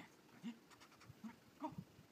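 Dog whining faintly: a few short, high, pitched whines about half a second apart.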